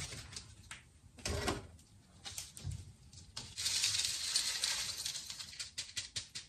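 Lechuza Pon, a granular mineral substrate, being poured from its bag into a plant pot. A couple of light knocks come first, then a couple of seconds of steady rattling rush of small stony grains, ending in quick scattered clicks as the grains settle.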